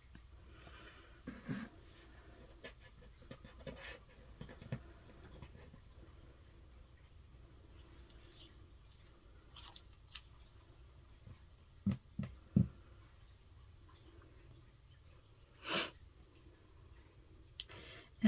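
Quiet room tone with a few scattered light clicks and knocks from craft tools being handled on a tabletop, among them a brass wax seal stamp. A brief, slightly louder rustling noise comes near the end.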